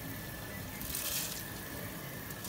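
A pot of spiced water at the boil as soaked rice is tipped in from a bowl, giving a steady, watery hiss, a little stronger about a second in.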